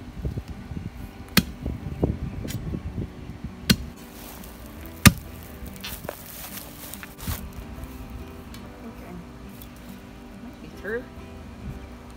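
A 16-pound steel tamping bar being jabbed into the ground to break out a tree root, with about five sharp knocks over the first seven seconds, the loudest about five seconds in, and duller thuds in between.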